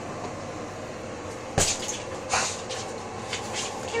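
A dog pushing a ball about on a tiled floor: one sharp knock about a second and a half in, a softer knock shortly after, then a few light taps.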